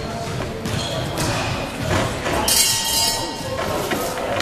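Spectator voices echoing in a large sports hall during a kickboxing bout, with thuds of gloved strikes. About two and a half seconds in, a loud, harsh sound lasts about a second.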